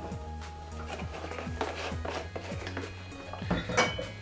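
Soft background music, with light clinks and knocks of a plastic bottle and glass graduate being handled on a counter.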